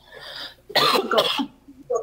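A person coughing, a harsh cough a little under a second in.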